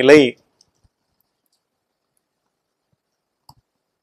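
A man's voice finishes a phrase just after the start, then near silence with a single faint click about three and a half seconds in.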